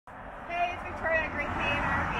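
A woman speaking a short greeting, beginning about half a second in, over a steady low outdoor rumble.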